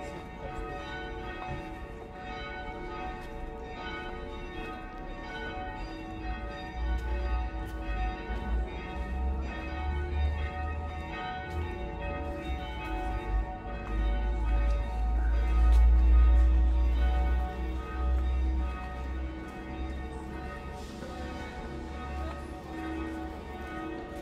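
Church bells ringing continuously, many overlapping ringing tones. A low rumble underneath swells in the middle and is loudest about two-thirds of the way through.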